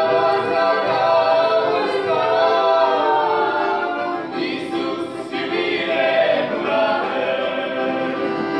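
A small mixed group of men and women singing a Romanian Christian song together in harmony, holding long notes.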